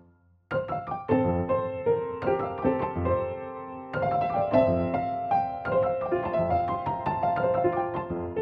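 Sampled upright piano, the Crow Hill Vertical Piano recorded from a Steinway World War II Victory piano, played as chords and a melody beginning about half a second in, with the notes ringing into each other. It is being layered as a tape loop with new playing over it.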